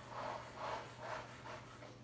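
A comb dragged through wet acrylic paint on a stretched canvas: four faint rubbing strokes about half a second apart, fading out near the end.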